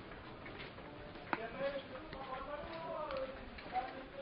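Faint, distant voices of people talking or calling, with a sharp knock a little over a second in.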